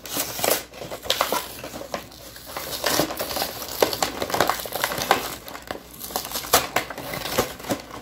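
Cardboard and plastic packaging of Pokémon card pin boxes being pulled open and handled: irregular crinkling and rustling with many short, sharp crackles.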